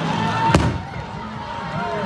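A single sharp firecracker bang about half a second in, over the noise of a large crowd's voices and chanting.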